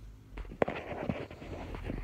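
Handling noise from the phone recording: a sharp click about half a second in, then about a second of rustling with a few smaller clicks.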